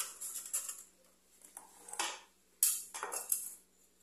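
Handling sounds of cheese-bread dough being rolled and set on a metal baking tray: rustling of dough and hands with light metallic clinks. The sharpest, loudest clink comes about two and a half seconds in.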